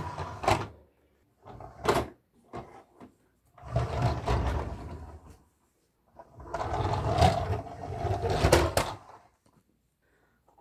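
A plastic toy car being pushed along by hand. A few light clicks and knocks come first, then two stretches of rolling rumble from its wheels, each a second or two long.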